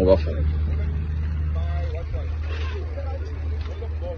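Steady low rumble of an idling vehicle engine close to the microphone, with faint voices in the background.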